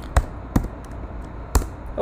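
Computer keyboard keystrokes: two sharp taps about a third of a second apart, then a third about a second later, made while a typo in the code is fixed and a new line is started.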